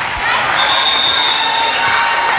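Indoor volleyball gym noise: voices and ball and court sounds, with a steady high whistle about half a second in that holds for over a second. The referee's whistle ends the rally.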